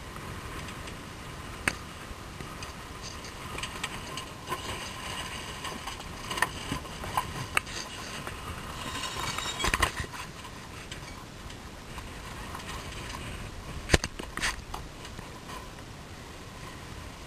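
Sailing yacht under way: a steady rush of wind and water with scattered clicks and knocks from deck gear, a cluster about ten seconds in and the sharpest knock near the end.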